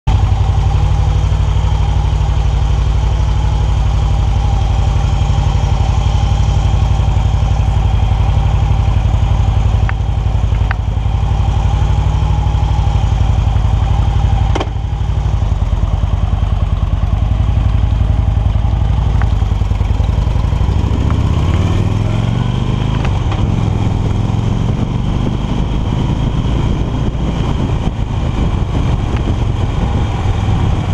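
Motorcycle engine idling steadily, then pulling away about two-thirds of the way through and revving up as it accelerates.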